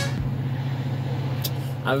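Car engine idling, a steady low hum heard from inside the cabin, with a small click about one and a half seconds in.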